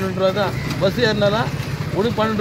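A man's voice, loud and close, with some pitches held steady, over road traffic passing in the background.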